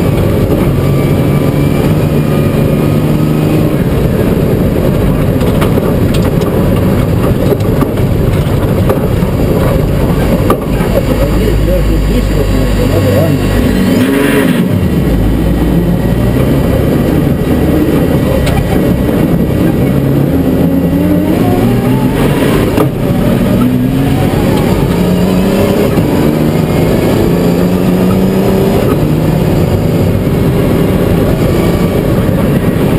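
In-cabin sound of a rally car with a BMW 3.0-litre turbodiesel engine being driven hard on a gravel road. The engine's pitch repeatedly climbs and drops as the sequential gearbox shifts, over loud road and gravel noise.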